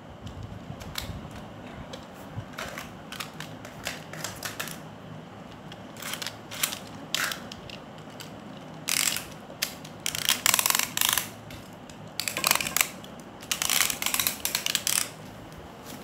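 Plastic Beyblade launchers and tops being handled and fitted together: scattered clicks, then two louder spells of ratcheting, about nine seconds in and again about twelve and a half seconds in.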